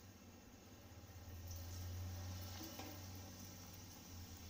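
Breadcrumb-coated egg cutlet frying in hot oil: a faint sizzle that swells about a second in and then eases off, over a low steady hum.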